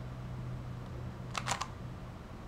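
3x3 Rubik's cube layer being turned one-handed: a quick cluster of three sharp plastic clicks about one and a half seconds in.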